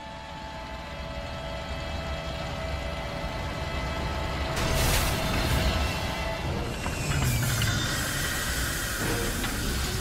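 Background music over the low engine rumble of a large many-wheeled truck, growing louder as it approaches, with a whoosh about five seconds in.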